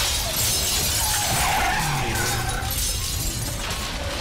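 Film sound effects of an earthquake destroying a city: shattering glass and crashing debris over a steady low rumble, with a wavering screech from about a second in.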